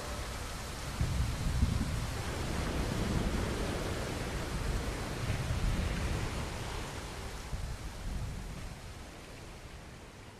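Steady hissing noise with a fluctuating low rumble, an ambience bed that sounds like rain or surf, fading out over the last few seconds as the song ends.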